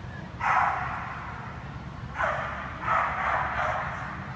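A dog barking three times: once about half a second in, then twice close together near the end. Each bark trails off in the echo of a large indoor hall.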